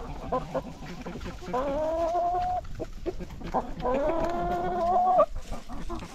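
A flock of hens clucking in short scattered notes, with two drawn-out calls of about a second each, one starting about a second and a half in and one about four seconds in, each rising at the start and then held steady.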